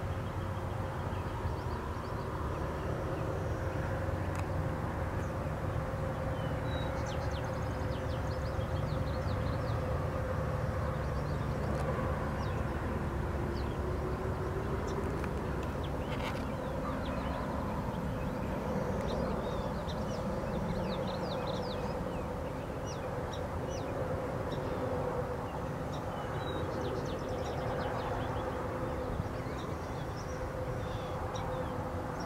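Small birds chirping in short high notes over a steady low drone, like an engine running at a distance.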